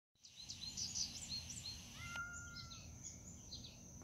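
Birds chirping in short high calls, thickest in the first second and a half, with a brief held whistle about two seconds in, over a steady thin high whine and a low outdoor rumble.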